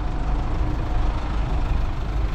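Engines of a queue of stationary cars and a taxi idling close by, a steady low rumble with a faint hum over it.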